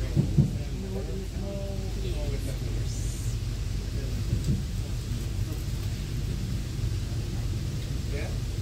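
A steady low rumble, with faint voices in the first couple of seconds and two sharp knocks right at the start.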